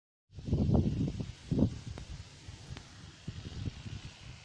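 Wind buffeting the microphone in irregular low gusts, strongest in the first second and a half, over a faint steady outdoor hiss.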